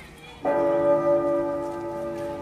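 A bell-like tone struck about half a second in, ringing on with several pitches at once and slowly fading.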